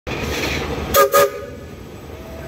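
Steam locomotive whistle blown in two short toots about a second in, over the hiss of steam venting from the engine. Two short blasts is the standard signal that the train is about to move off.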